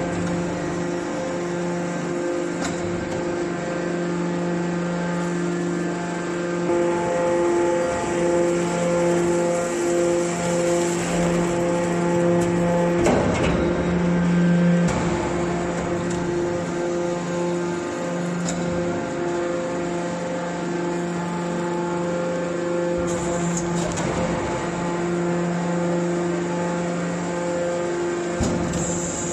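Hydraulic scrap-metal baler running as it compresses steel turnings: a steady motor and pump hum with a whine. The hum grows louder and rougher about 13 seconds in, with a few short clicks along the way.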